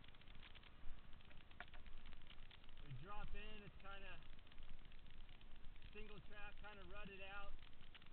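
Mountain bike rolling fast along a dirt trail: steady tyre and wind noise with scattered rattling clicks from the bike. A voice talks over it about three seconds in and again about six seconds in.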